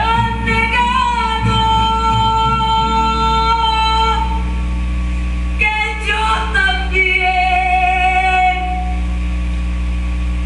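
A woman singing two long, held high notes over an instrumental backing, with a short break between the phrases about five and a half seconds in.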